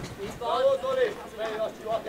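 A distant man's voice calling out in a few drawn-out syllables, fainter than the commentary around it.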